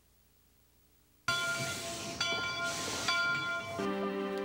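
Steam train whistle that starts suddenly about a second in. It sounds several steady tones at once over a hiss of steam, in a few blasts with short breaks. Music begins near the end.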